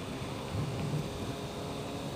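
Steady wind rush and low engine and road noise from a 2009 Suzuki Hayabusa sport bike cruising along a street.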